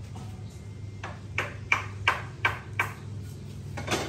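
A run of about six sharp metallic pings, roughly three a second, then a louder one just before the end, over a steady low hum.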